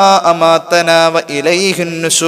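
A man's voice chanting Arabic recitation in a melodic style, holding long, steady notes and stepping between pitches.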